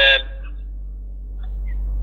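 A man's voice ends a phrase just at the start, then a pause filled by a steady low hum under the recording.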